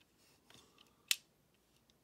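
Plastic clicks from a Transformers MB-03 Megatron action figure being handled, its waist turned by hand: a few faint clicks, then one sharp click about a second in.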